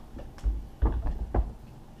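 Handling noise from an electric skateboard being lifted and turned over on a table: three dull knocks and bumps about half a second apart.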